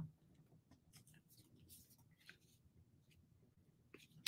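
Near silence, with a few faint brief rustles and taps of small pieces of patterned paper being laid onto a card.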